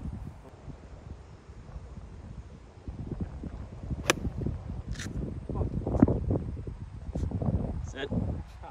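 A golf wedge striking the ball on a short pitch shot: a sharp click, heard against low wind rumble on the microphone.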